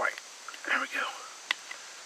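Quiet, breathy whispered muttering from a man straining to stretch a rawhide cord into the notch of a wooden bow-drill bow, followed by a single sharp click from handling the rawhide and bow.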